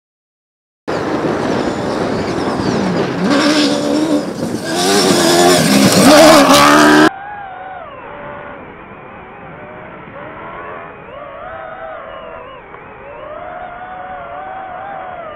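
Toyota Hilux rally-raid car's engine revving hard at speed, starting about a second in, its pitch rising and falling as it climbs through the revs and loudest just before the middle. About halfway through the sound cuts abruptly to a quieter, duller engine note that wavers up and down as the car drives on.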